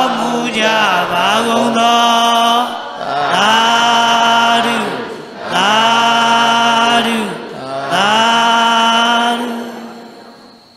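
A male voice chanting in long, drawn-out syllables at a steady pitch: the closing chant of a Burmese Buddhist dhamma talk. The phrase is repeated in several long held calls, and the last one fades out near the end.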